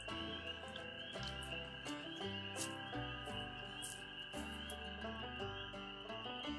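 Soft background score with a slow bass line whose notes change about once a second. Under it runs a steady high chorus of night frogs or insects.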